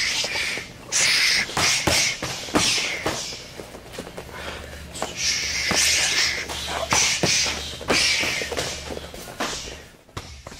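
Close-range striking drill: repeated short, hissing bursts of forceful breath, with quick thumps of elbows and knees landing and the scuff of feet and clothing.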